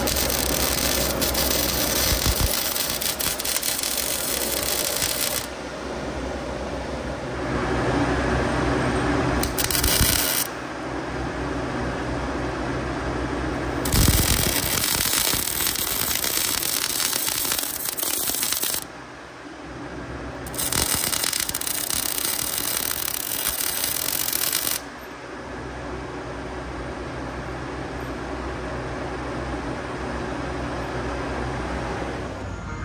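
Wire-feed (MIG) welding arc crackling and hissing in four bursts, the longest about five seconds at the start and one only about a second long, as nuts are welded onto the steel track frame. A steady low hum runs underneath, strongest near the start and end.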